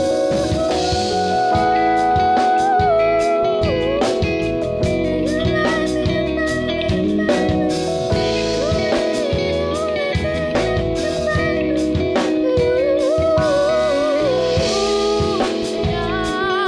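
A live band playing a song: electric guitar, bass guitar, Pearl drum kit and Yamaha Motif keyboard, with a sung melody held and bending over the steady drum beat.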